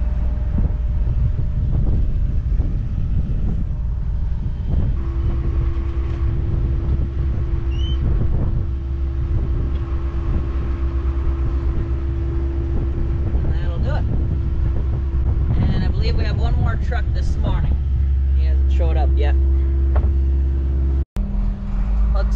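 Tractor engine running steadily, heard from the cab as a low, continuous rumble, with a steady whine joining about five seconds in. The sound cuts out briefly near the end.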